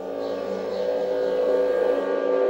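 A steady drone of several held tones, swelling slightly in loudness.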